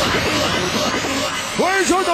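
Electronic dance music from a DJ set: a noisy build with a faint rising sweep, then, about a second and a half in, a run of synth notes that bend up and down in pitch.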